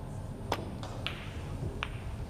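Three-cushion carom billiard shot: the cue striking the cue ball and the balls clicking into each other, three sharp clicks over about a second and a half.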